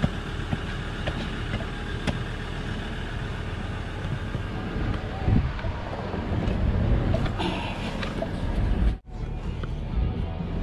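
Ford Everest SUV engine idling, heard through the open driver's door, with a couple of light clicks. The sound drops out briefly near the end.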